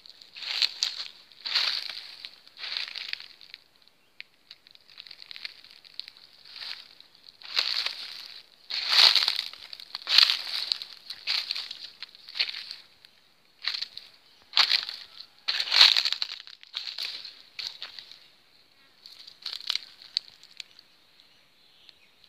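Dry undergrowth rustling and crunching: dead leaves, twigs and grass stems pushed aside and stepped on in irregular bursts about once a second, over a steady faint high-pitched tone.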